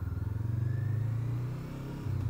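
Honda CBR500R's parallel-twin engine running at low revs, with the note easing off slightly near the end.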